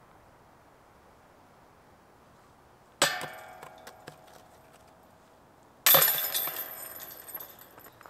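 Two disc golf putts hitting a metal chain basket, about three seconds apart: each a sudden metallic clang that rings on and fades, the second louder and brighter.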